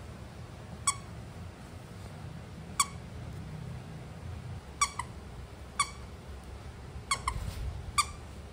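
Small dog chewing a plush corduroy squeaky toy and working its squeaker. There are short, sharp squeaks every second or two, twice in quick doubles.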